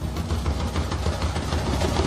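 A steady, low, engine-like rumble in the dance performance's backing soundtrack, with no voice over it.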